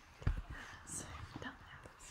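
A person's faint voice over a video call: soft breaths and murmured fragments, with a low thump about a quarter second in.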